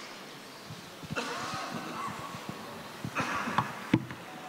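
Hushed, low voices of people praying together in a large hall, coming and going in two soft stretches, with scattered soft low knocks of people moving about.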